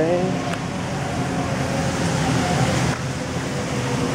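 Steady rushing background noise of a large airport terminal concourse, with faint distant voices.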